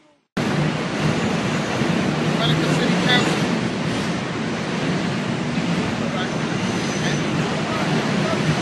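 Loud, steady street noise: an even rushing hiss of traffic and open air on a phone microphone. It cuts in abruptly about a third of a second in, after a moment of silence.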